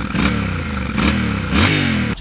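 Yamaha Ténéré 700 World Raid's CP2 689 cc parallel-twin engine revving in short blips, its pitch climbing and falling back about three times.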